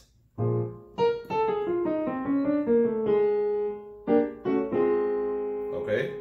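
Piano voice of a digital keyboard: a low chord struck, then a quick descending run of single notes, then chords struck and held. This is a run and chord substitution played over a B-flat dominant chord.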